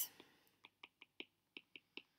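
Faint, short clicks of a stylus tapping a tablet screen while handwriting, about eight of them at irregular intervals.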